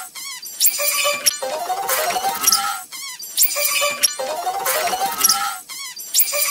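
A cartoon woman's scream and the soundtrack around it, sped up four times into a high, squeaky chirping. The same snippet loops about every three seconds, each repeat starting after a brief dip, so it plays twice and starts a third time.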